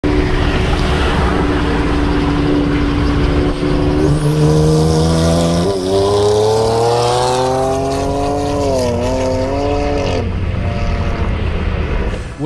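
Twin-turbo BMW 335i's N54 inline-six accelerating hard at highway speed. Its pitch jumps up twice, then climbs steadily with a brief dip before dropping away about ten seconds in. Heavy wind and road noise run under it throughout.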